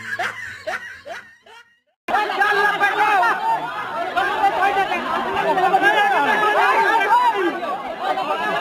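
Short rising cries repeat and fade out in the first second or so. After a brief silence, many voices chatter and snicker over one another, dense and unbroken.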